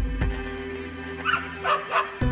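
Background music with steady sustained tones, over which a dog barks twice, short and high, in the second half. A short click sounds at the very start.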